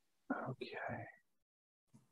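Speech only: a voice says "okay" once, briefly, then near silence.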